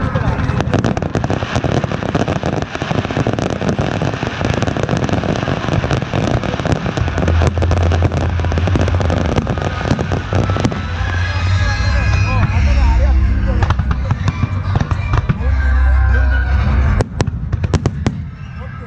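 Fireworks display: a dense crackle of many small bursts through the first half, with deep booms of aerial shells bursting from about halfway on, heaviest near the end.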